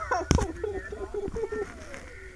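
Human voices with a laughing, drawn-out quality, in long wavering tones. A short sharp knock comes about a third of a second in.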